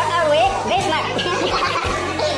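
Several young voices talking and laughing over background music.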